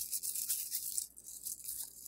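Rune pieces rattling and clicking against each other inside a cloth pouch as a hand rummages through them, a quiet, irregular patter of small clicks.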